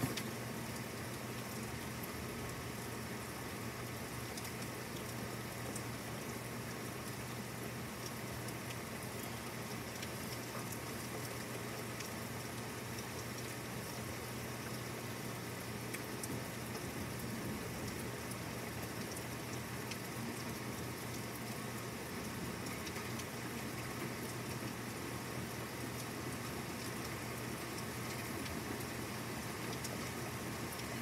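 Steady thunderstorm rain falling, an even hiss with scattered faint drop ticks.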